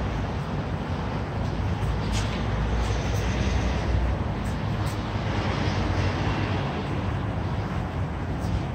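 Steady low rumble of city traffic, with a few faint ticks over it.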